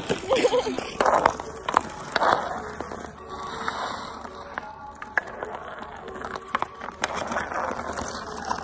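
Ice hockey skate blades scraping and gliding over pond ice, with sharp clacks now and then as sticks hit the puck.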